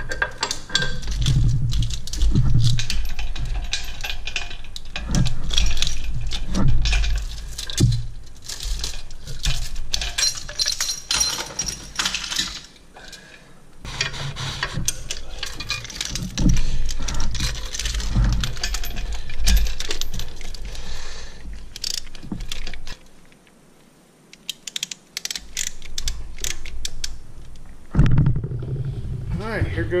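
Steel lifting chains and come-along hooks rattling and clinking as they are handled and hooked onto a diesel cylinder head, with many sharp metallic clinks and low handling bumps.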